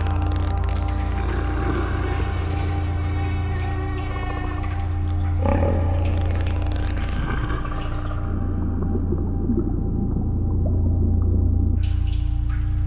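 Dark ambient horror score: a deep, steady low drone under layered sustained tones. The upper range drops away suddenly about eight seconds in and comes back near the end.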